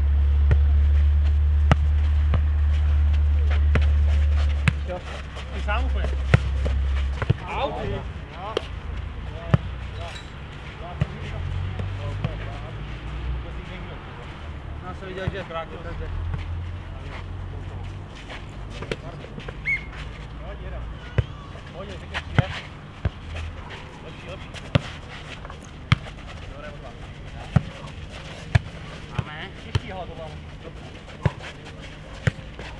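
Nohejbal (futnet) ball being kicked, headed and bouncing on a clay court: sharp single thuds at irregular intervals, coming more often in the second half. A deep rumble fills the first seven seconds.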